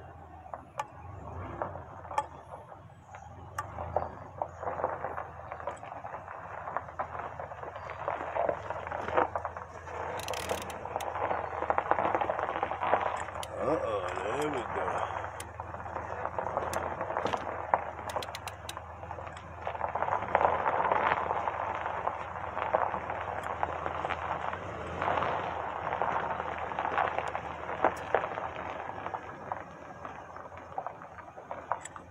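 Scattered metal clicks and knocks of a wrench being worked on a truck wheel's lug nuts, which are stuck tight.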